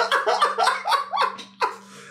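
Men laughing in quick repeated bursts, dying down after about a second, with one last short laugh near the end.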